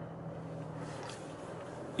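Alfa Romeo Giulia's engine heard from inside the cabin, a faint, steady low hum as the car rolls slowly at low revs.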